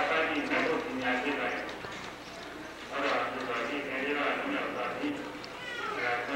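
Speech only: a man's voice speaking in Burmese, pausing briefly about halfway through.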